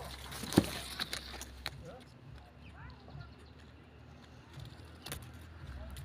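Quiet outdoor background with a few sharp clicks, the loudest about half a second in, and a few faint, brief chirps about two to three seconds in.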